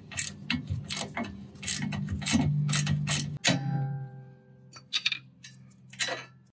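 Ratchet wrench clicking as the nut is backed off the NC Mazda MX-5's rear toe-arm bolt: a quick, uneven run of clicks for about three and a half seconds, then a metallic clink that rings briefly, and a few more scattered clicks.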